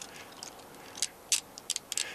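Metal handcuffs ratcheting shut on a suspect's wrists: a series of short, sharp clicks, most of them in the second half.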